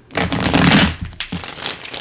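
Tarot cards rustling as they are handled on the table, a noisy rustle lasting under a second, then a short tap.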